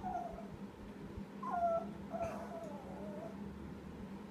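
Small dog whining in high, drawn-out, wavering whimpers, three in a row, the last the longest: a 'sad song' of frustration over a ball he has lost and can't reach.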